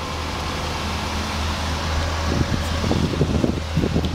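Chevrolet Impala's engine and drivetrain running in drive on jack stands, the wheels off and the brake discs spinning freely: a steady low drone. Irregular thumps and rustles come in over the second half.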